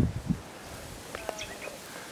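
A few short bird chirps about a second in, over quiet outdoor bush ambience, with two low thumps at the very start.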